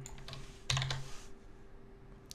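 A few computer keyboard keystrokes, sharp clicks clustered in the first second or so, as lines of code are edited in a text editor.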